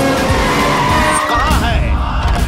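Car tyres squealing as a white SUV brakes hard to a stop: a high squeal that climbs, wavers and ends about a second and a half in, over background music.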